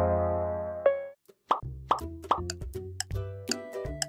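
A held electronic chord fades out about a second in; after a brief gap come three quick cartoon plops, and then an upbeat background music track with a clicky, ticking beat starts.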